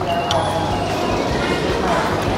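Food-court background noise with faint, indistinct voices, and a small click about a third of a second in.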